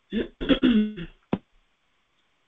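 A woman clearing her throat: a few short rasping bursts within the first second, ending in a short sharp click.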